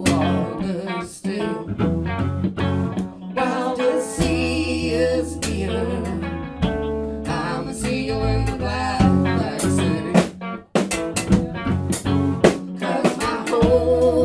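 Live band playing a song: guitars and drum kit, with singing.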